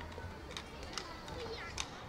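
Children playing at a distance, their faint voices and calls carried in the open air, with a few sharp taps among them.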